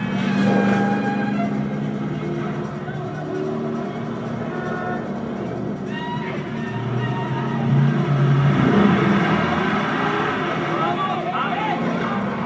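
A car engine running hard at speed in a film chase, mixed with a music score, with short voice sounds near the middle and end.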